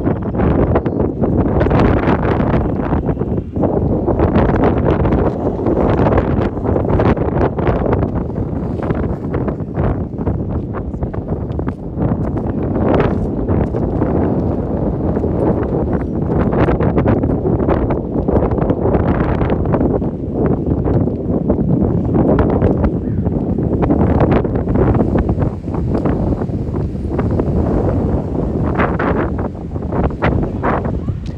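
Wind buffeting a phone's microphone, a loud low rumble that rises and falls in gusts.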